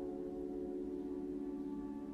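Steady ambient background music of held, bell-like tones in the manner of a singing bowl or gong, sustained without a break.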